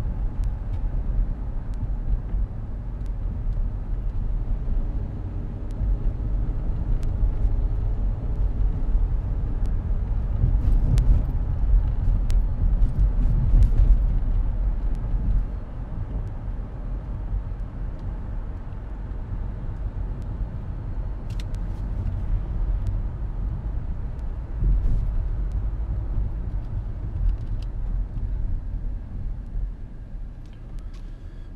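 A car driving, heard from inside the cabin: a steady low rumble of road and engine noise. It swells louder about halfway through, then eases off a little.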